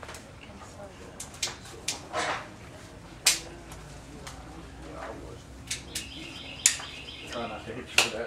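Bamboo culm being split by hand, bent and twisted apart: a scattering of sharp cracks and snaps as the fibres part along the split.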